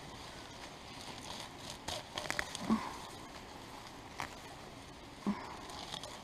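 Grass being pulled by hand from wet garden soil: scattered soft crackles and snaps, with a small cluster about two seconds in and another single snap a couple of seconds later.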